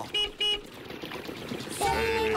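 A cartoon horn gives two quick short toots in a row.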